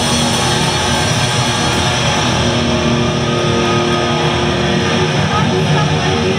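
Live rock band playing loud through a venue PA, heard from the audience: electric guitar over a drum kit in an instrumental passage.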